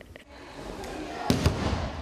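Gym room noise fading in, with two sharp smacks in quick succession a little after a second in, as of sambo wrestlers' bodies and feet hitting the mat in training.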